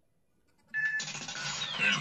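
Electronic sound effects opening a radio station ID: after a near-silent moment, a short high beep about three-quarters of a second in, then a dense burst of electronic noise with a falling sweep. A man's voice-over begins right at the end.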